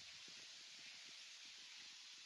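Near silence: faint outdoor ambience, a soft steady hiss with faint low rustles.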